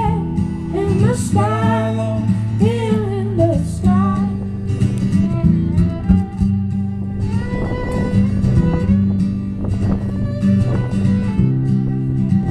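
Live acoustic duo: a woman's voice sings over strummed acoustic guitar for the first few seconds, then a violin plays with the guitar for the rest.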